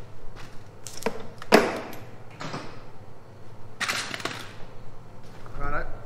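A few short, separate knocks and clatters of things being handled and moved, the loudest about a second and a half in, then a brief voice sound just before the end.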